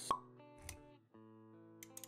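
Intro-animation music with sound effects: a sharp pop just after the start, the loudest sound, then a softer low thud, over held musical notes that drop out briefly about halfway and return, with quick clicks near the end.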